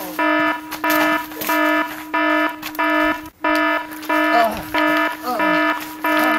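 An electronic alarm-like beeping tone, pulsing on and off a little under twice a second. About two-thirds of the way through, two short vocal cries fall in pitch over it.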